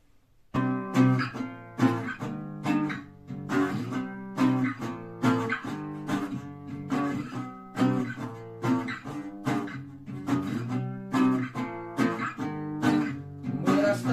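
Classical acoustic guitar strummed in a steady rhythm of chords, starting about half a second in: the instrumental opening of a song.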